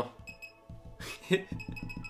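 Laser projection keyboard giving short, high electronic beeps, one each time it registers a projected key press, over background music. A brief louder sound about a second and a third in.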